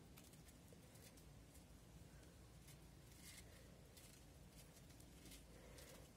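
Near silence, with a few faint soft ticks and rustles of metal circular knitting needles and wool yarn being handled while a 2x2 cable cross is worked.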